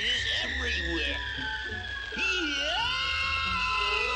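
Cartoon falling-whistle sound effect: a whistle gliding slowly and steadily downward in pitch, signalling a character's long drop. A cartoon cat's wordless yelling wavers underneath it in the first few seconds.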